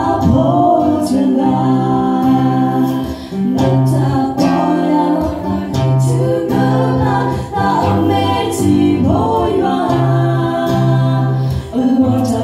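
Three women singing a Karen-language song together, accompanied by an acoustic guitar.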